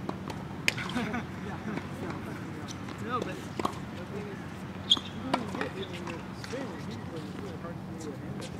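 Indistinct, distant voices on a tennis court, with a few sharp knocks of tennis balls on the hard court. The loudest knock comes about five seconds in.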